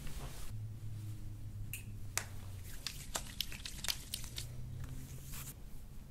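A rapid string of sharp cracks, about a dozen over some three seconds starting about two seconds in: the thoracic spine's joints popping under the chiropractor's hand pressure during an adjustment.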